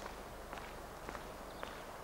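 Footsteps on a wet paved path at a steady walking pace, about two steps a second.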